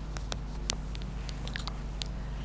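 Faint, irregular small clicks close to the microphone, about a dozen in two seconds, over a low steady hum.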